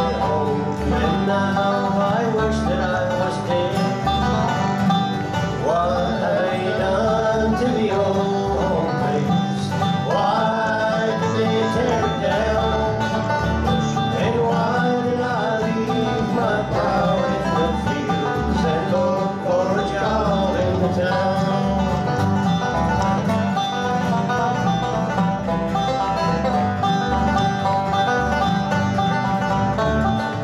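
Bluegrass band playing live: acoustic guitars, five-string banjo and upright bass, with a lead vocal and a second voice singing harmony. The singing stops about two-thirds of the way through and the instruments play on.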